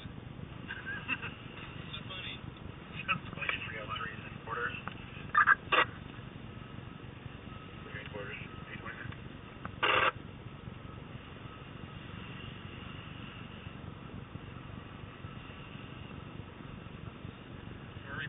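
Low steady rumble of a vehicle driving slowly, heard from inside the cab, with indistinct voices. Two short loud bursts stand out, about five and a half seconds in and again at ten seconds.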